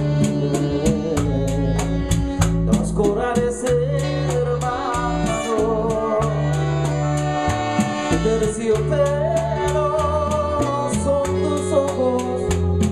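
Live Latin band playing an instrumental passage of a bolero: electric bass, congas and timbales, with saxophones and trombone carrying a gliding melody. A steady high percussion tick runs about three times a second.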